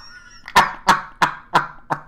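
A man laughing heartily: five short, breathy bursts of laughter, about three a second.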